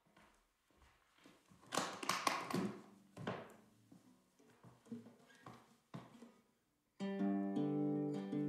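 Quiet, scattered guitar sounds and light knocks open the song. About seven seconds in, an acoustic guitar starts strumming chords steadily.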